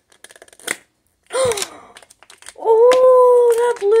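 Plastic putty packet crinkling and clicking as it is worked open, then a child's long drawn-out vocal 'ooh' held on one pitch from about two and a half seconds in.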